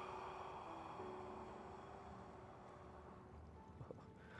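A long, slow out-breath by a person, fading away over about three seconds, with a faint steady hum under it.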